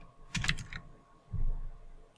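Typing on a computer keyboard: a quick run of key clicks about half a second in, then a dull low knock about a second and a half in.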